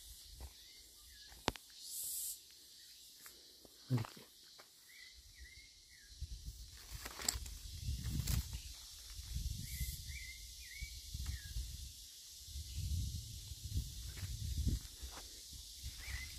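Outdoor ambience with a steady high hiss and a songbird giving short chirping calls a few times. From about the middle on there is a low rumbling noise on the microphone.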